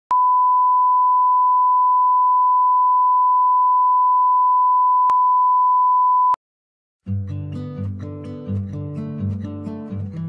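A steady, loud test-tone beep on a single pitch, the reference tone of bars-and-tone, runs for about six seconds and cuts off abruptly. After a second of silence, music begins.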